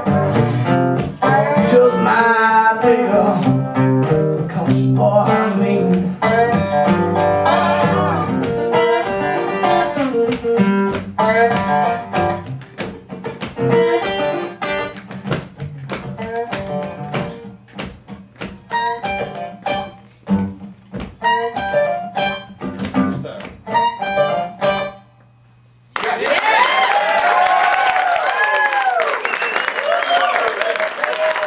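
Live country song on acoustic guitar and dobro, thinning to a few last picked notes and stopping about 25 seconds in. After a short pause the audience applauds and cheers.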